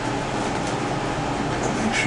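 A steady rushing noise, like a fan or air handler, with a few faint scrapes as a rubber squeegee works conductive ink across a circuit board.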